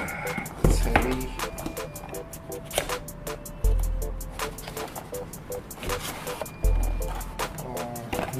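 Background music with short pitched notes and a deep bass note about every three seconds.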